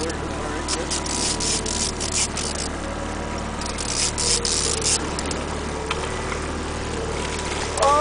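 Boat engine running steadily, a low hum with a faint thin whine above it, under recurring bursts of hiss and faint voices.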